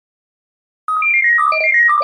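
Intro music jingle: silence for almost a second, then quick runs of short, bright chiming notes falling in pitch.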